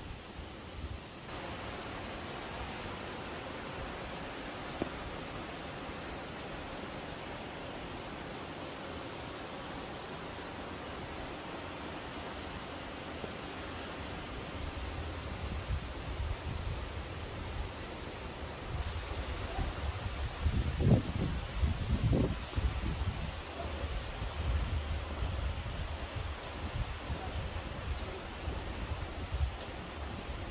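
Steady outdoor rushing noise, with wind buffeting the microphone from about halfway through, in the strongest gusts a little after two-thirds of the way in.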